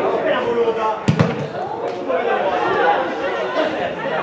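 Several voices calling out across an outdoor football pitch, with one sharp thud of a football being kicked about a second in.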